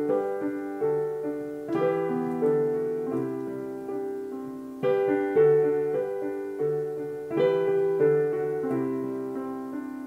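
Piano playing the slow introduction to a ballad: chords struck about once a second and left to ring, each one fading before the next.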